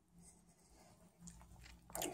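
Near silence: room tone with a few faint, soft rustles from hands handling small wired circuit boards.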